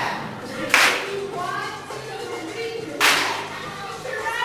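A group of dancers clapping together in unison: two sharp, loud claps, about a second in and about three seconds in, each ringing briefly in the room. Voices sing between the claps.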